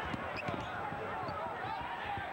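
Basketball bouncing on a hardwood court during play, with a steady murmur of arena crowd voices.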